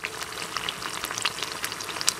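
A rice-flour poricha pathiri deep-frying in hot oil in a steel pot: a steady sizzling hiss with many small crackles and pops.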